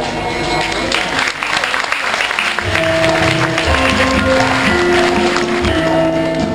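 Audience applauding, and about halfway through, music with held, steady notes comes in over it.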